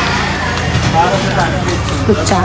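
Indistinct voices talking over a steady low rumble of vehicle traffic.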